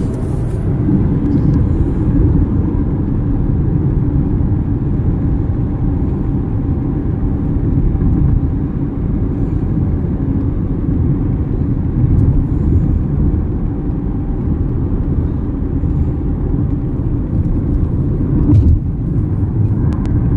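Steady road and tyre noise with engine hum heard inside a car's cabin while driving along an interstate highway; an even, low rumble that holds level throughout.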